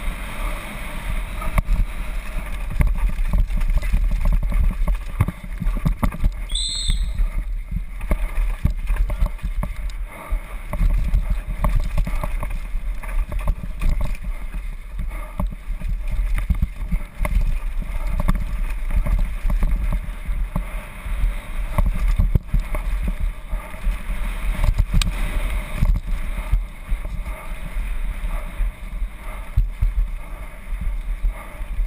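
Helmet-camera sound of a downhill mountain bike ridden fast over a dirt forest trail: wind rushing over the microphone with a constant low rumble, and the bike rattling and knocking over bumps and roots. A brief high squeal about seven seconds in.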